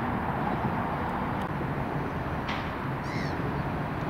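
Steady low outdoor background rumble, with a couple of short, high bird chirps in the second half.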